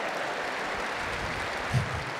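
Theatre audience laughing and applauding in a steady, dense wash after a punchline.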